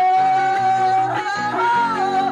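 A man singing one long held note into a microphone, the pitch stepping up once a little past halfway, over acoustic guitar accompaniment in Panamanian torrente style.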